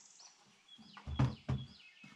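Birds chirping in the background, then two dull knocks about a second in as a shotgun is laid down on a wooden shooting bench.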